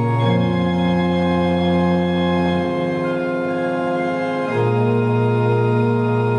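Organ playing slow, sustained chords that shift to new harmonies a few times, with a deep bass under them.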